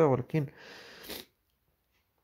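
A man's voice finishing a few syllables, followed by a short soft hiss, then dead silence for the second half.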